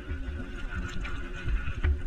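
Downhill mountain bike rolling fast over a dirt trail: the low rumble of the tyres and wind on the camera's microphone, broken by uneven knocks from bumps in the trail.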